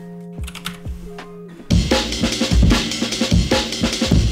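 Quiet held synth or orchestral notes, then about a second and a half in a sampled breakbeat drum loop starts, loud and busy, as drum-break samples are auditioned from the FL Studio browser.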